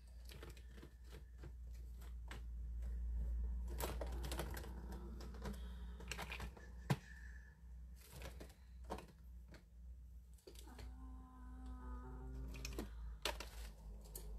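Scattered clicks and knocks of small pots and craft supplies being rummaged through on a desk, over a low steady hum.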